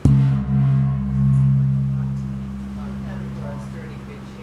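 A 27-inch antique hand-made brass bossed gong (tawak) struck once with the bare hand, giving a deep, sustained hum of several low tones that swells slightly about a second in and then fades slowly.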